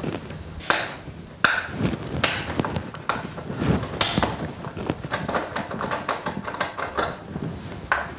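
A black plastic screw cap being unscrewed from a plastic Oxuvar oxalic-acid bottle. There are a few sharp clicks in the first four seconds, then a quick run of small clicks and scraping as the cap comes off.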